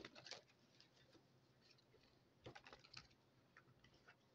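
Near silence with a few faint, light clicks and taps, a short cluster of them about two and a half seconds in.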